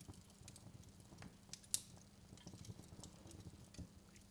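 Faint crackling fire: scattered small crackles and pops, with one sharper pop a little under two seconds in.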